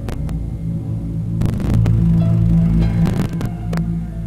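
A loud, steady low hum that swells through the middle, broken by several sharp clicks: two at the start, a cluster about a second and a half in, another just past three seconds, and one more near the end.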